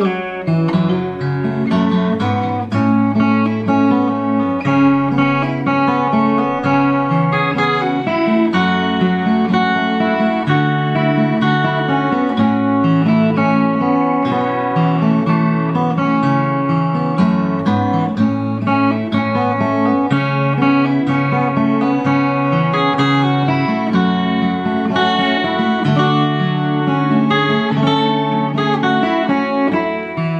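Enya EGA X1 Pro acoustic guitar played fingerstyle: a slow melody picked over sustained bass notes. It sounds through the guitar's built-in speaker with chorus and reverb switched on.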